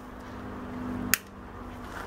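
A faint low steady hum, growing a little louder, cut off by a single sharp click about a second in.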